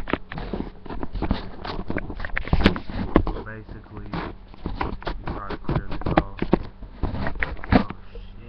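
A dense, irregular run of knocks, taps and scrapes, the handling noise of something being fumbled with and set up.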